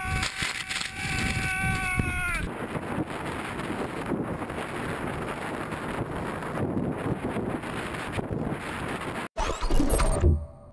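Wind and water noise on an open boat at sea, rough and uneven. For the first two seconds or so a steady high whine runs over it, then cuts off.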